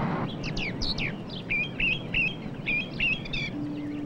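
A small songbird chirping: a few quick downward-sweeping notes, then a run of short repeated chirps that stop shortly before the end.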